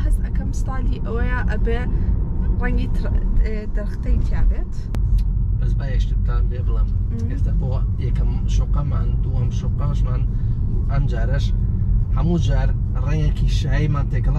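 Conversation over the steady low rumble of road and tyre noise inside a moving car's cabin.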